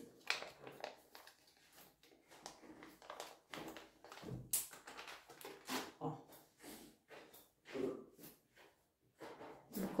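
Faint, irregular crinkling and rustling of a small sachet of under-eye patches being handled, with light clicks and taps as patches are taken out and placed under the eyes.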